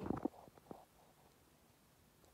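Lip balm stick rubbed across the lips close to the phone's microphone, giving a short cluster of soft rubbing and lip noises in the first second, then quiet room tone.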